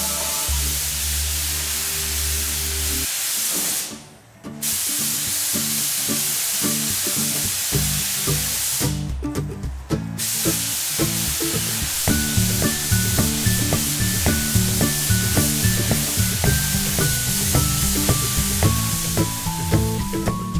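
A paint spray gun gives a steady hiss that cuts out briefly about four seconds in and again near ten seconds, over background music with a plucked melody entering about halfway through.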